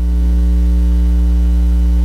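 Loud, steady electrical mains hum, with a row of fainter steady tones above its low drone.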